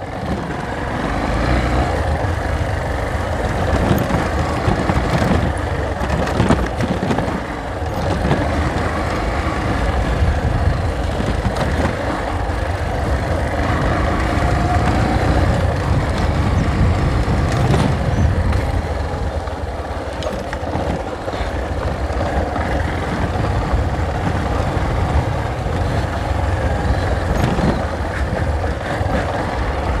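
Motorcycle engine running steadily under way on a rough dirt track, with occasional short knocks as it rides over bumps.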